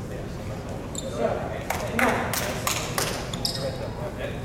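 Indistinct voices in a gym, with a quick run of about five sharp knocks starting near the middle and lasting about a second and a half.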